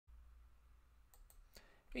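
Near silence with a faint low hum, broken by a few faint clicks a little past halfway.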